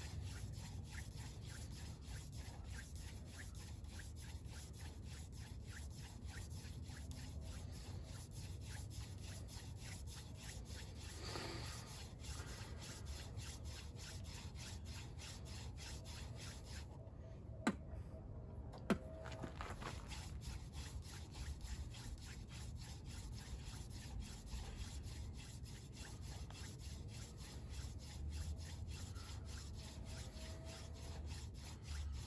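Wooden hand-drill spindle spun back and forth between the palms, grinding into a wooden fireboard in a steady run of rubbing strokes to build friction heat for an ember. Two sharp clicks a little over a second apart sound just past the middle.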